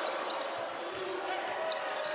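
Basketball being dribbled on a hardwood court during live play, under the steady noise of an arena crowd.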